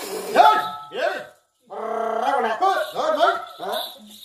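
A loud theatrical voice over a stage microphone, calling out in short, pitch-swooping exclamations with one held stretch near the middle.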